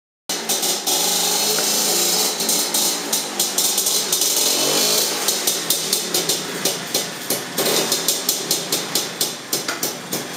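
Motor scooter engine running, with sharp repeated pulses about three a second in the second half.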